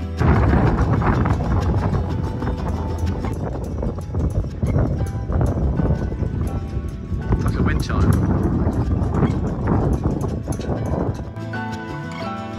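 Halyards and rigging on rows of sailing dinghies clinking and tapping against their masts in the wind, with wind rumbling on the microphone.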